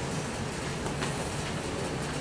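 Steady, even background noise of the room, with no distinct event apart from a faint click about a second in.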